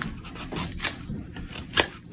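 Ozark Trail fixed-blade knife shaving wood while carving a spoon bowl: a few short scraping cuts, the sharpest one near the end.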